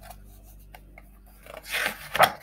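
A page of a picture book being turned by hand: a few faint paper ticks, then a loud rustling swish of paper near the end.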